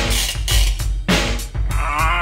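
Rock song from a band recording: drums hitting regularly over bass and guitar, and near the end a held note with a wavering pitch comes in.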